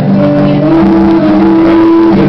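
A live band playing loudly, an instrumental passage with no singing. One note slides up a little after the start and is held to the end.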